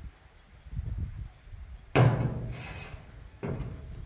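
Two thumps, the first about halfway in and the louder of the two, the second about a second and a half later, over a low rumble.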